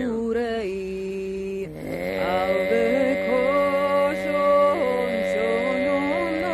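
A woman singing a Tuvan traditional song: a slow, ornamented melody over a steady low drone, with a short breath about two seconds in.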